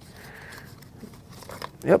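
Faint rustling and scraping of cardboard as a phone charger is slid out of its small white cardboard box.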